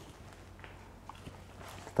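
Quiet room tone with a faint steady low hum and a few soft, faint handling clicks.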